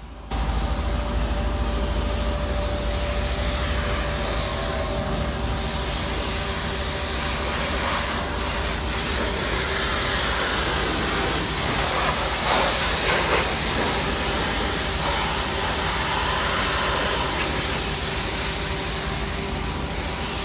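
Street cleaner's high-pressure water hose spraying the pavement: a loud, steady hiss of the water jet with a low rumble underneath. It comes on suddenly right at the start.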